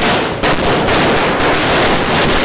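A string of firecrackers going off, bursting suddenly into a loud, rapid, continuous run of cracks.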